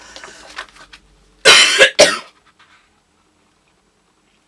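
A woman coughs twice in quick succession about a second and a half in, a longer cough followed by a short one.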